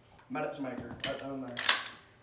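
Shotgun action being handled and worked: two sharp mechanical clacks about two-thirds of a second apart, the second one louder.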